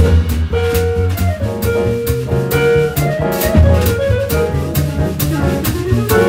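Jazz quartet playing live: hollow-body jazz guitar, piano, double bass and drum kit. Walking double-bass notes sit under held guitar and piano notes, with steady, evenly spaced cymbal strokes from the drums.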